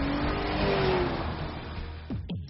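Car engine accelerating: its pitch rises over the first second, then it eases off and fades away as the car goes by.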